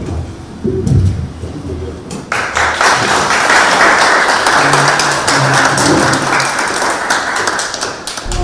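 Audience applauding: the clapping breaks out about two seconds in and carries on steadily, with a few low voices before it.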